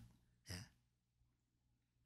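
Near silence: room tone, broken once about half a second in by a short, soft spoken "ye" (yes) from a man.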